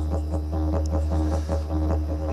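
Didgeridoo music: a steady low drone with a quick, even pulse of about five or six beats a second.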